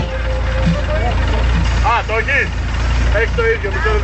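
Deep, steady bass rumble from a car audio system's subwoofers played loud, with people's voices calling out over it.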